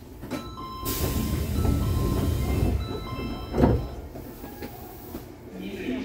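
Sendai Subway Namboku Line train heard from inside the car: a low running rumble with steady whining tones, loudest between about one and three seconds in, then easing. A single sharp, loud sound comes about three and a half seconds in.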